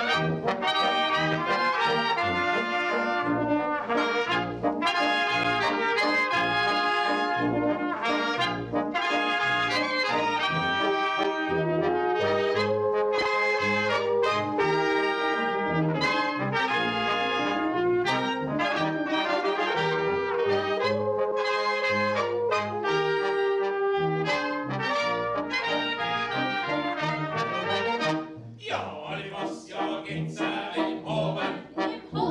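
German brass band playing a tune live: trumpets, trombone, baritone horns and tuba over a moving bass line, with clarinets. The music stops about two seconds before the end.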